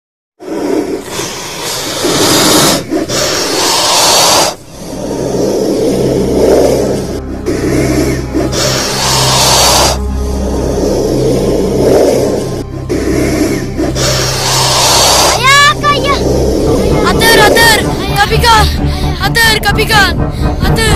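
Loud, long, anguished cries from a boy, coming in stretches of a few seconds with short breaks, over dramatic background music with a low drone. A melody with sliding notes comes in near the end.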